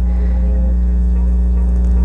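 Steady low drone of a minibus engine, heard from inside the passenger cabin.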